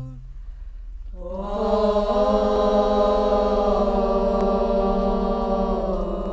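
A girls' nasheed group singing in unison: after a quieter first second, the voices come in on one long held note that shifts slightly in pitch but otherwise stays steady to the end.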